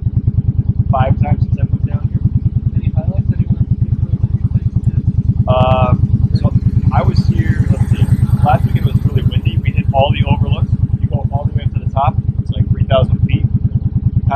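Motorcycle engine idling with a steady, rapid low pulse.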